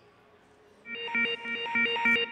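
Competition field's 30-seconds-remaining warning signal over the arena speakers: a pulsing electronic alarm of several stacked tones, beating about three times a second, starting about a second in.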